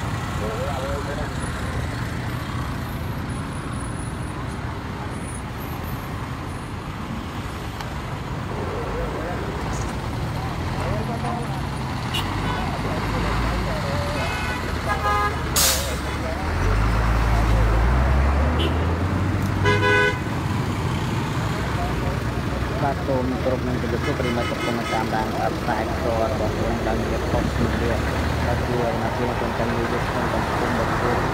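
Heavy road traffic passing close by, with a low engine rumble from a large vehicle swelling loudest a little past halfway. Vehicle horns toot briefly a few times around the middle.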